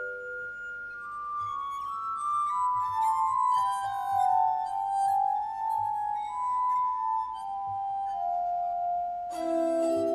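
Glass harmonica played by wet fingertips rubbing the rims of its spinning glass bowls: a slow melody of pure, sustained ringing tones that steps gradually downward. Near the end a fuller, lower chord comes in.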